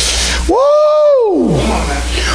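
A single drawn-out vocal cry from one voice over the church sound system, rising in pitch, holding, then sliding down, lasting about a second.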